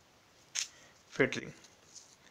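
A voice makes one brief syllable just after a second in, preceded by a short puff of breath-like noise, over quiet room tone.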